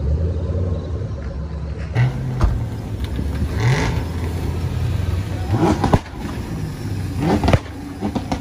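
Car engine idling steadily. After a cut it revs three times, each rev a rising sweep in pitch.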